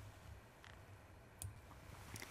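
Near silence with low room hum, and one faint click a little past halfway through: a mouse click advancing the slide.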